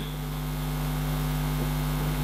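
Steady electrical mains hum from the amplified sound system: a low, unchanging drone with several fixed tones above it.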